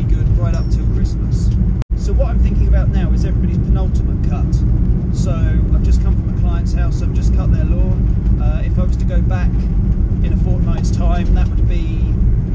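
Steady low rumble of a van, heard from inside the cab, under a man's continuous talking. About two seconds in, all sound drops out for a split second.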